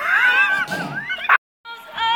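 A high, whining cry that rises and wavers in pitch, cut off abruptly after about a second and a half. After a brief dead silence, a held musical note starts near the end.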